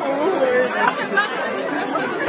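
Crowd chatter: many voices talking over one another at once, with no music playing.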